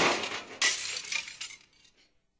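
Glass shattering: a loud crash right at the start and another about half a second later, with smaller tinkling hits that die away near the end.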